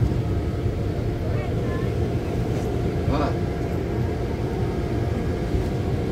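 Steady low rumble of a moving vehicle, engine and road noise heard from inside the cabin as it drives along.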